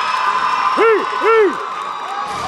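Crowd in a gymnasium cheering and applauding a championship win, with voices throughout. About a second in come two short whoops that rise and fall in pitch.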